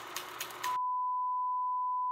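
Crackly hiss with scattered clicks that cuts off under a second in. A single steady electronic beep tone begins and holds unbroken.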